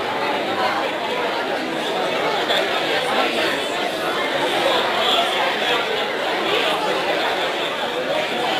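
A roomful of people chattering at once: a steady babble of overlapping conversations with no single voice standing out.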